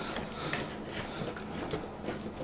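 Faint rustling and small clicks of an old car wiring harness being handled, its wires and plastic connectors shifting against each other and the cardboard, over a low steady hum.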